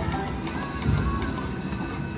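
Video slot machine playing its electronic spin music and reel sounds as the reels spin, over a steady low casino-floor hum.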